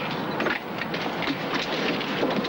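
Semi-truck diesel engine idling with a steady, rattly clatter and irregular small ticks.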